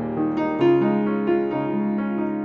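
Solo piano playing a melodic piece, new notes and chords struck about every half second, the loudest a little over half a second in.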